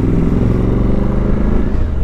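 Suzuki V-Strom 1050XT motorcycle's V-twin engine running at a steady note while riding along.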